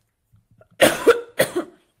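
A woman coughs twice in quick succession.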